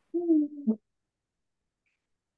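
A person's short voiced sound, a single held syllable lasting under a second, right at the start, with a slight drop in pitch at its end.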